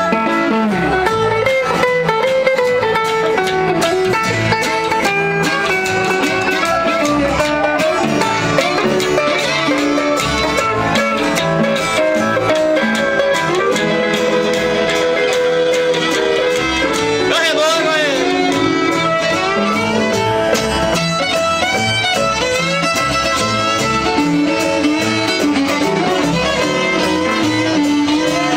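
Live honky-tonk country band playing an instrumental break: pedal steel guitar and fiddle take the lead over strummed acoustic guitars and upright bass.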